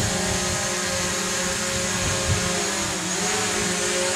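Small folding quadcopter drone hovering indoors, its propellers giving a steady whine that dips slightly in pitch about three seconds in as it is brought down to land.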